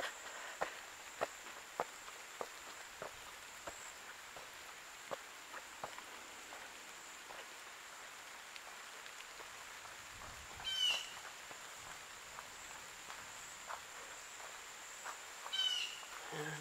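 Footsteps on dry leaf litter, soft crunches about one every half second at first, then sparser, over a steady high-pitched insect drone. A bird gives a short call about eleven seconds in and again near the end.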